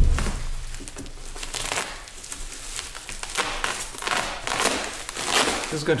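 Plastic wrapping crinkling and rustling in irregular bursts as it is cut and pulled away by hand, with a low thump right at the start.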